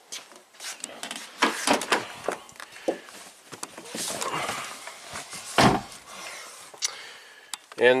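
Handling noises of opening a car door and climbing into the driver's seat: scattered clicks and knocks, a stretch of rustling, and one heavy thump a little past halfway.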